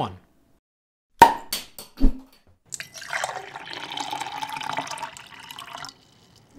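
Beer bottle cap prised off with a sharp snap about a second in, then a few clinks and a knock. After that comes about three seconds of beer pouring steadily into a pint glass.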